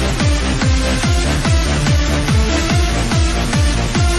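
Techno dance music with a steady kick drum beating about twice a second under sustained synth chords.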